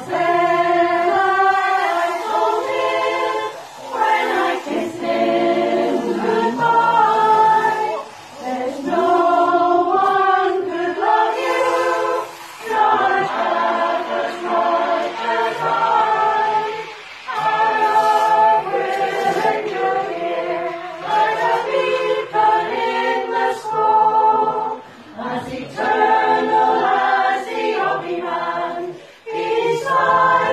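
Women's choir singing a cappella in several-part harmony, a folk song sung in phrases of about four seconds with brief breaths between them.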